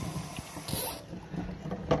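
Kitchen faucet running water onto raw chicken in a steel pot, shut off about a second in. A sharp click near the end.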